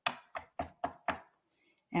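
A small stack of cut paper pieces tapped on edge against a paper trimmer to square it up: five quick, sharp taps at about four a second, stopping a little past the first second.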